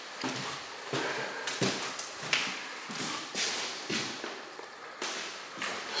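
Footsteps on a hardwood floor while walking, about one step every two-thirds of a second.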